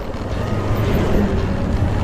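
Motorcycle running while riding along a road, with engine and road noise under a heavy, fluttering wind rumble on the microphone.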